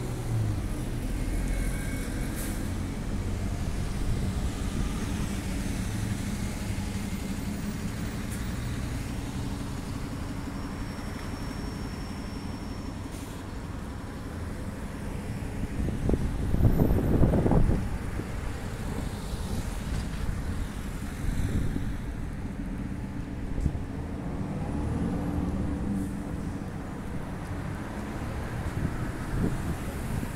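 Street traffic: cars running and driving past at low speed, a steady low rumble of engines and tyres. One vehicle passes close and loud just past the halfway point, for about two seconds.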